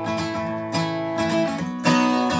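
Acoustic guitar strummed in a steady rhythm, its chords ringing on, in the instrumental lead-in to a country gospel song.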